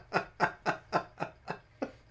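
A man laughing hard in a steady run of short "ha" pulses, about four a second, each dropping in pitch, growing fainter and dying away near the end.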